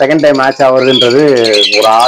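Caged lovebirds chirping, with a man talking loudly over them for most of the two seconds.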